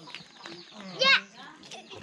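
Young children's voices chattering and calling, with a short, high-pitched shout about a second in.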